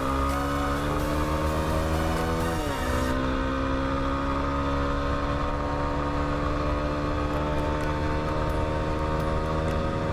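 Yamaha WR250R's single-cylinder four-stroke engine pulling steadily under way. The revs climb slowly, dip sharply at a gear change a little under three seconds in, then climb slowly again.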